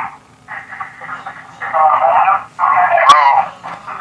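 Muffled, hard-to-make-out voices coming through a telephone line, in three short stretches, over a noisy, loud background on the caller's end. There is a sharp click about three seconds in and a faint steady hum underneath.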